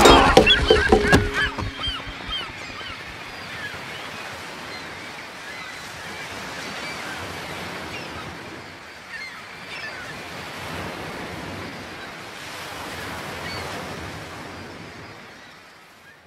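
A song ends in the first second or two. Then a soft rushing noise, like surf or wind, swells and eases in slow waves, with a few short bird calls, and fades out near the end.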